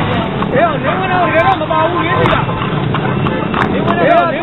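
A person's voice in long wavering phrases over the steady rumble of a horse-drawn cart on the move, with the clip-clop of its horse's hooves.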